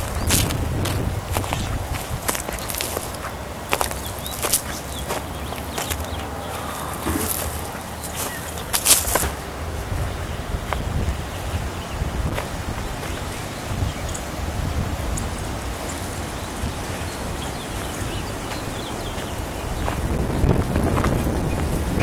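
Outdoor background noise on a handheld camcorder: a steady low rumble, with scattered sharp clicks and rustles in the first half.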